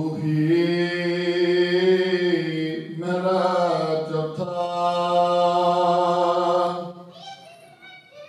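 A man chanting in two long held notes at a steady pitch. The first lasts about three seconds, and after a short break the second is held for about four seconds before it fades.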